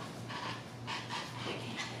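Soft, breathy laughter: a run of short puffs of breath, about two a second.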